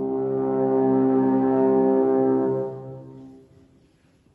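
Alphorn holding a long, low note in a solo cadenza, then breaking off about two and a half seconds in and dying away in the church's echo to near silence.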